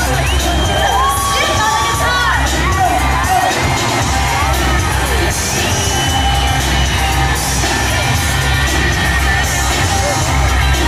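Live pop band playing with a steady low beat while concert fans scream and cheer close to the microphone, their high held screams rising and falling over the music.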